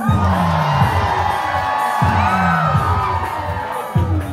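Loud music, with a falling bass sweep that repeats about every two seconds, under a crowd cheering and shouting.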